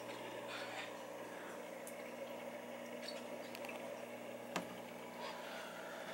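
Faint, steady hum of a saltwater aquarium's pumps and wavemaker, with a light hiss of moving water and one small click about four and a half seconds in.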